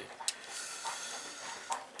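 Faint steady hiss with two light clicks, one just after the start and one near the end.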